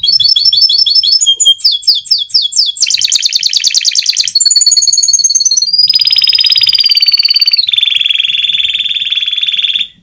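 A white domestic canary singing: quick runs of repeated chirps, then a fast buzzing trill, then long, steady rolling notes, and the song breaks off abruptly near the end.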